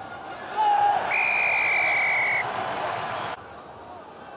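Referee's whistle blown in one long, steady blast about a second in, signalling the try, over crowd cheering that swells just before it. The crowd noise cuts off suddenly a little past three seconds.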